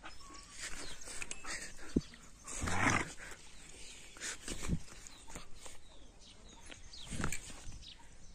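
Two German Shepherds play-fighting, giving short, irregular vocal bursts; the loudest and longest comes about three seconds in.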